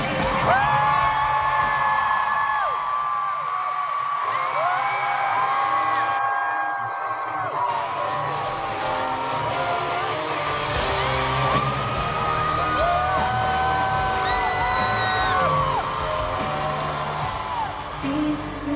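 Live electronic pop over a loud arena sound system in an instrumental stretch without lead vocal. The bass drops out for a few seconds in the middle and comes back with fast ticking hi-hats. Many fans close by scream and whoop in long, overlapping cries throughout.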